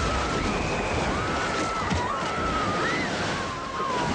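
Film soundtrack of a shark attack on a sailboat: a loud, steady rush of crashing water and splashing, with high, wavering screams rising and falling over it.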